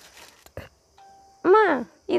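A person's short voiced call about one and a half seconds in, its pitch rising then falling, after a faint short steady tone.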